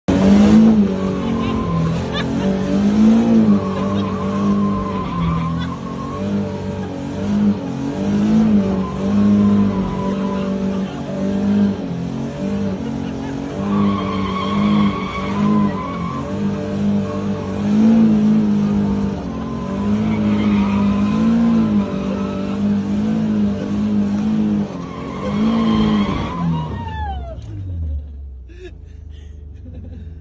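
Drift car's engine held at high revs with the pitch rising and falling as the throttle is worked, with tyres squealing, heard from inside the roll-caged cabin. About 27 seconds in the revs fall away and the engine settles to a low idle as the car slows.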